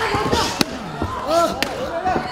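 Men shouting in a wrestling ring, with two sharp impacts about a second apart.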